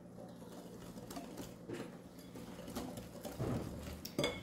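Faint, irregular light taps and clicks from a salt shaker being shaken over a glass mixing bowl and a wire whisk moving in the egg-and-sugar batter, over a low steady hum.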